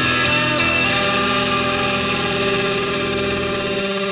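Noise-rock band's heavily distorted electric guitars and bass holding a loud, steady droning chord, many sustained tones ringing together.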